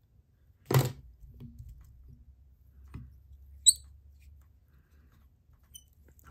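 Small handling sounds at a fly-tying vise: one sharp knock under a second in, a few faint taps, and a brief high chirp of a click near the middle, over a faint low hum.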